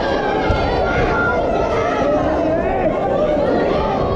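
Spectator crowd chatter: many voices talking and calling out at once, with no single voice standing out.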